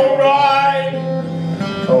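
A male voice holds one long sung note over a strummed acoustic guitar. A new sung line begins near the end.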